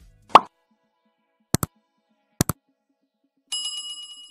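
Subscribe-button animation sound effects: a quick pop as the button appears, two sharp clicks about a second apart as the like and subscribe buttons are pressed, then a bell chime ringing near the end for the notification bell.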